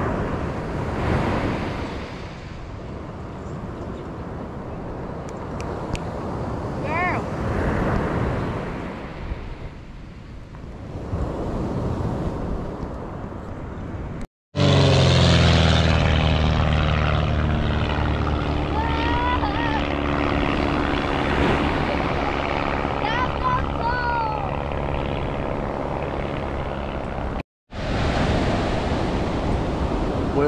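Wind and surf noise on the microphone, then, after a cut about halfway in, a single-engine propeller airplane passing overhead: a steady engine drone that holds one pitch for about thirteen seconds before the sound cuts off.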